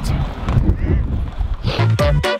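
Wind buffeting the microphone, a loud low rumble, with faint voices in the background. Music comes in near the end.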